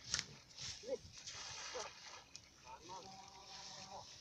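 A cast net landing on the lake water with a brief, soft splash near the start, followed by faint voices.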